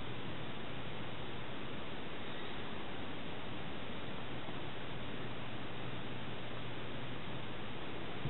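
Steady hiss with a low, even hum underneath and no distinct sounds standing out: the recording's background noise.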